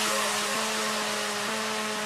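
Electronic dance music in a breakdown with no beat: a synthesizer pad holding steady chords over a steady hiss.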